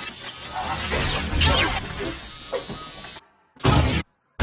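Dramatic TV soundtrack: a dense, harsh din of score and effects with a deep rumble and falling shrieking sweeps. It cuts off suddenly about three seconds in, and a short, loud burst follows near the end.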